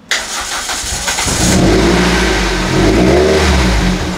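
Car engine cranked by the starter for about a second, turned over by a freshly fitted battery after sitting unused a long time, then catching and running. The revs rise and fall once about three seconds in before settling toward idle.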